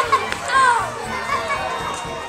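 Indistinct chatter of several children's voices, overlapping.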